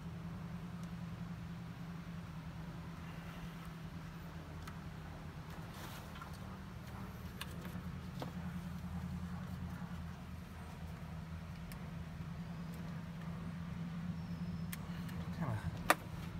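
A steady low mechanical hum, with scattered faint clicks and taps of hands handling small parts.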